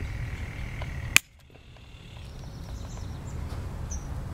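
One sharp snap about a second in: hand wire cutters biting through a stiff wire, over low steady outdoor background noise that drops away just after the snap and slowly returns.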